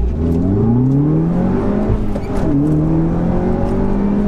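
Audi S1's two-litre turbocharged four-cylinder engine at full throttle in a standing-start launch, heard from inside the cabin. The engine note rises fast, drops sharply with an upshift about two seconds in, then climbs again more slowly in the next gear.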